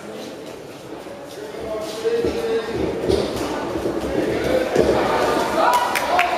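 Spectators' voices calling out in a large, echoing hall, getting louder from about two seconds in, with a few sharp thuds near the end.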